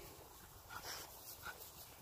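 A dog whimpering faintly: two brief, soft whimpers about three quarters of a second apart.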